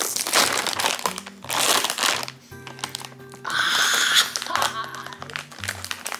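Plastic potato-chip bag crinkling loudly in several rustles as it is pulled open and handled, over background music with steady low notes.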